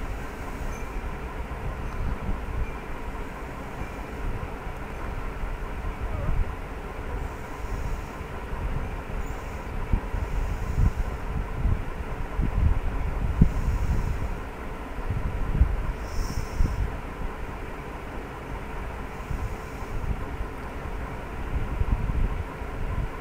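Low, uneven background rumble with a faint steady hum underneath, and no speech.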